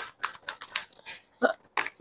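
Quick, irregular rustles and light clicks of tarot cards being handled and laid out.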